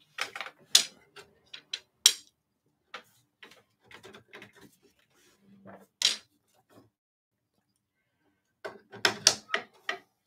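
Takadai braiding: tama bobbins clacking against one another and against the stand's rails as they are passed from side to side by hand. The irregular sharp clicks come in clusters, with one loud knock about six seconds in and a quick run of clacks near the end.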